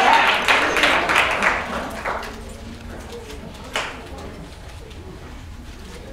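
Audience clapping and cheering that dies away about two seconds in, leaving a low murmur of voices. There is a single sharp click near four seconds.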